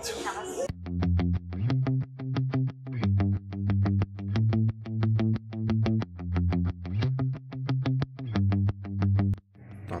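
Background music with a fast, even beat of about six strokes a second over low bass notes, stopping shortly before the end.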